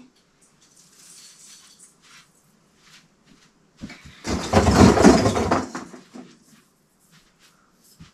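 Rummaging in a cardboard box on the floor: a loud rustling and scraping burst lasting about two seconds, starting about four seconds in, with faint rustling before it.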